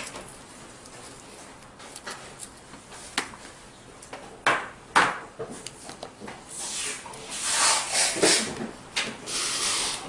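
Thin holographic nail-art transfer film being handled: a few scattered clicks, then about six seconds in a dense crinkling and rustling of the plastic sheet.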